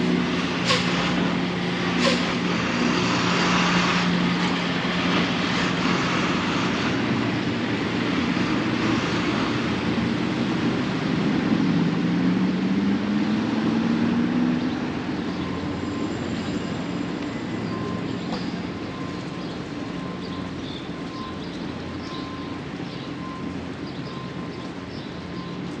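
A box truck's engine idling close by with a steady hum, then revving up in a rising pitch for about three seconds as it pulls away about twelve seconds in, growing quieter after. A few sharp clacks come in the first two seconds, with city traffic noise throughout.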